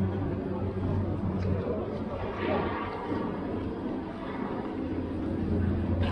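Town street ambience: a steady engine hum from motor traffic, with the indistinct voices of passers-by.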